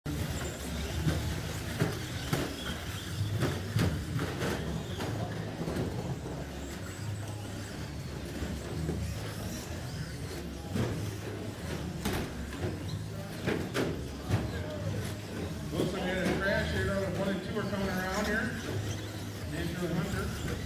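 Radio-controlled short-course race trucks running on an indoor track: repeated sharp clacks and knocks as the plastic trucks land and bump, over a steady low hum of the hall. Voices are heard, most plainly near the end.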